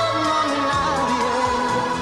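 Telenovela opening theme song: a pop ballad with a sung melody over the accompaniment.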